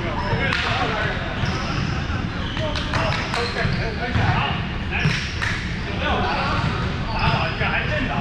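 Balls bouncing on a hardwood gym floor: several sharp thuds a second or so apart, ringing on in a large hall, over indistinct voices.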